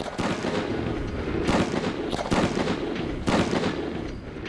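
A multi-charge bamboo gunpowder device going off in a rapid, continuous string of small cracks like a string of firecrackers, its charges fused to fire one after another rather than all at once. Louder single bangs stand out at about a second and a half, two and a quarter, and three and a quarter seconds in.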